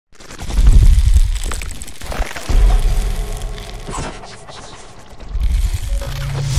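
Sound effects for an animated logo intro: three deep bass hits, the first about half a second in, the second about two and a half seconds in and the third building near the end, each with crackling, shattering noise over it.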